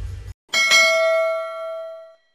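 A notification-bell ding sound effect: struck once about half a second in, then ringing out and fading over about a second and a half. Before it, a low rumbling transition effect cuts off abruptly.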